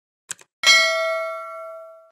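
Subscribe-animation sound effect: a quick double mouse click about a third of a second in, then a bright notification-bell ding that rings and slowly fades.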